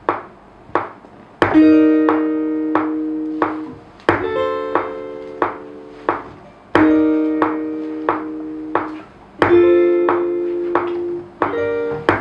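A slow progression of sustained keyboard chords played on a MIDI keyboard into Logic, four chords each held for about four clicks, over a steady click about every two-thirds of a second. These are the dark, "sinister" chords being tried out for a new beat.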